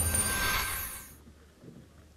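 Broadcast transition whoosh accompanying a logo wipe: a sudden hiss that fades away over about a second.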